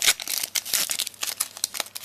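A Pokémon trading-card booster pack's foil wrapper crinkling and crackling as it is pulled and torn open by hand, a dense run of sharp crackles that is loudest right at the start.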